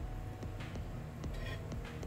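A pot of sugar syrup boiling on a gas stove, a steady low bubbling rumble, with irregular clicks and knocks from a wooden spatula moving plantain pieces in the pot. Faint music plays underneath.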